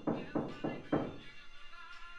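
Four heavy thuds in quick succession in the first second, about a quarter second apart, over background music.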